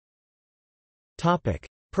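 Dead digital silence for just over a second, then a synthesized text-to-speech voice starts reading a section heading.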